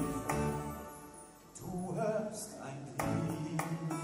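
Live music, with singing and instruments. The sound thins out about a second in, a melody with bending pitch comes in, and the full music returns about three seconds in.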